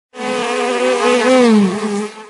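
Buzzing bee sound effect: a loud, steady buzz that wavers in pitch and dips toward the end.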